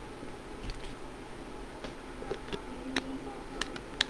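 Faint steady background noise with a few scattered sharp clicks and ticks.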